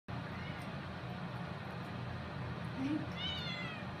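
Domestic cat meowing: a faint short call about half a second in, then a louder meow falling in pitch near the end. Underneath, the steady hiss of water running from a bathroom sink faucet.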